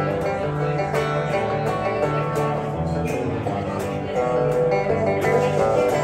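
Electric guitars playing an instrumental passage of a slow song, picked melody notes over changing low chord notes.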